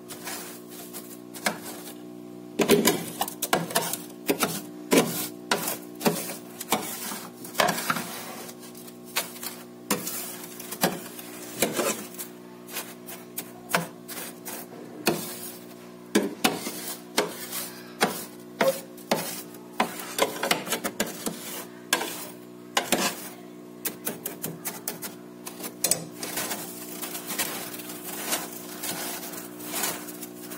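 Bare hands scraping and scooping thick frost inside a freezer: a long run of short, irregular scrapes and crunches, with a steady low hum underneath.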